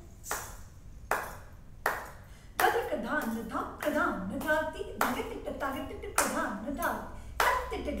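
Hand claps keeping the tala, evenly spaced at about one every three-quarters of a second. From about two and a half seconds in, a woman recites the paran's spoken drum syllables (bols) in rhythm over the claps.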